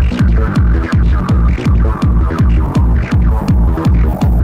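Hardcore acid techno played from vinyl in a DJ mix: a fast, heavy kick drum at about three and a half beats a second, each hit dropping in pitch, under an acid synth line.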